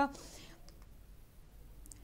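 A brief pause in a woman's voice-over: a faint intake of breath just after she stops, then a few faint clicks over otherwise very quiet room tone.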